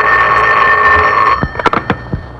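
Telephone bell ringing steadily and stopping about a second and a half in, followed by a few sharp clicks as the receiver is picked up.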